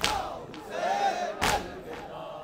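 Crowd of mourners doing matam, striking their chests in unison: one loud collective slap at the start and another about a second and a half later. Between the strikes, a mass of men's voices shouts and chants.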